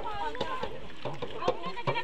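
Several women's voices talking over one another, with frequent short sharp clicks.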